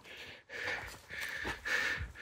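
A person breathing hard through the nose and mouth in quick, noisy breaths, about two a second, as after exertion.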